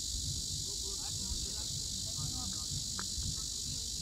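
Steady high-pitched insect chorus over a low rumble, with faint distant shouts of players.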